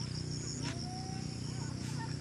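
Insects trilling steadily at a high pitch over a steady low rumble, with a few faint short chirps.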